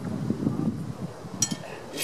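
Steel broadswords clashing once about one and a half seconds in, the blades giving a short, high metallic ring, over low background noise.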